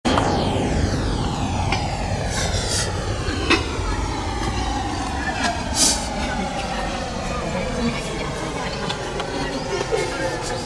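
Outdoor crowd noise: indistinct voices over a steady low rumble, with a slow, falling whoosh through the whole stretch and a couple of short clicks.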